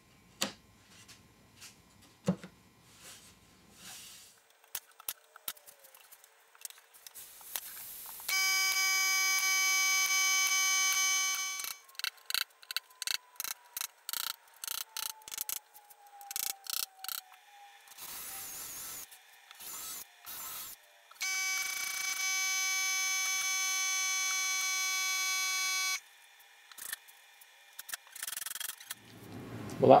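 Brad nails being driven through a thin back panel into a cabinet case: a quick run of sharp strikes, about three a second. The strikes fall between two stretches of a loud, steady, high-pitched whine, each lasting several seconds.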